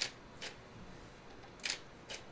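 Shutter of a Fujifilm GFX 100S medium format camera firing: three short clicks, one at the start, one about half a second later and one near the end, as still photos are taken.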